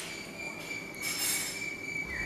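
White-throated kingfisher giving a long, even, high-pitched trilling whistle that drops in pitch as it ends, with a brief rush of hiss about a second in.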